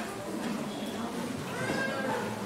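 Indistinct talking of several voices in a large echoing hall, with a higher-pitched voice near the end.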